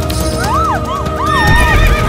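Horses whinnying in several short rising-and-falling calls over galloping hooves, with a sustained film-score music bed underneath; the low thudding swells near the end.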